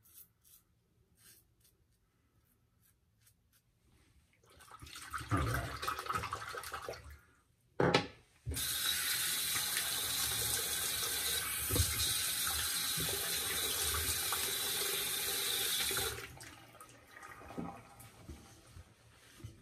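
Water splashing for a few seconds, then a knock and a bathroom sink tap running steadily for about seven seconds before being shut off, as in rinsing after a wet shave.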